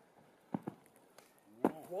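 Footfalls of a person running across sandy ground, a few soft separate thuds, then a sharper thump about a second and a half in as he jumps into a flip. A voice starts calling out at the very end.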